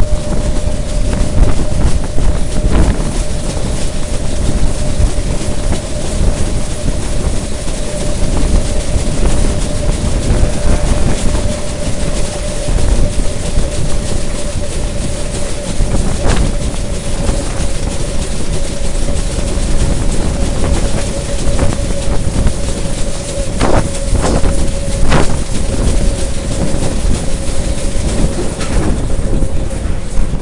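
Electric suburban commuter train running at speed, heard at an open window: a steady rush of wheel-and-rail noise with a steady whine running through it, and a few sharp clicks about 16 and 24 seconds in.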